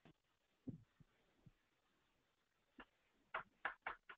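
Near silence: quiet line or room tone with a few faint, short knocks, several of them close together near the end.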